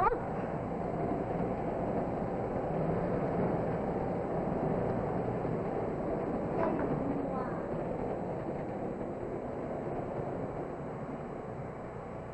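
Steady running noise of a moving railway carriage, a drama sound effect, fading slowly toward the end.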